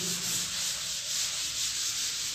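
A board duster being wiped across a chalkboard to erase chalk writing: a steady rubbing noise.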